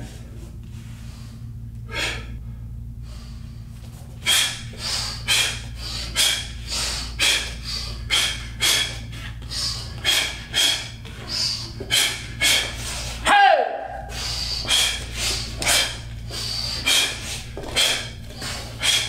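A martial artist's short, sharp breaths forced out through the nose with each block, strike and kick, about two a second from about four seconds in, over a steady low hum.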